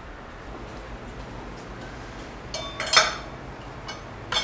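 Metal clinking, with a short cluster of clinks ending in one sharp clank about three seconds in, as a tool and wire are worked against the fan clutch in a Chevy Tahoe's engine bay. A low steady hum runs underneath.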